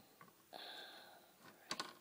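Faint clicking of plastic Lego pieces being handled and pressed onto a minifigure. A soft hiss about half a second in, then a quick cluster of small sharp clicks near the end.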